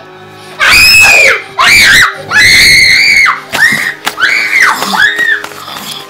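Girls screaming: three long, loud, high-pitched screams, then a run of shorter shrieks, over background music.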